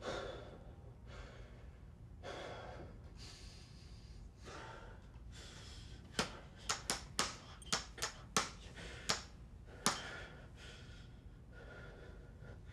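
A man breathing heavily in slow, loud breaths, then about nine sharp clicks in quick, uneven succession over some four seconds: a handheld flashlight's switch being clicked over and over.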